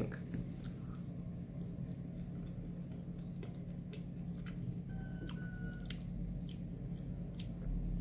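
Faint mouth sounds of a person chewing a sticky piece of halva, a few soft scattered clicks over a steady low room hum.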